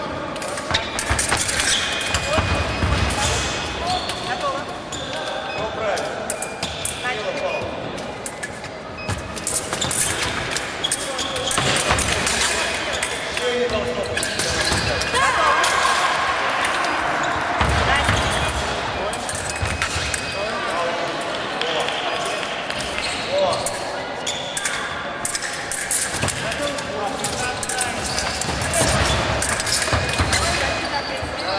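Fencers' feet thudding and stamping on the piste during a bout, with sharp knocks scattered throughout, in a large echoing hall with voices in the background.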